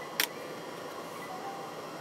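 Steady hum of a running desktop PC, with one sharp click just after the start.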